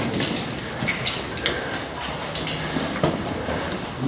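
Footsteps scuffing and crunching on the rock floor of a tunnel, with the rustle of clothing as people walk; irregular small clicks and scrapes over a noisy background.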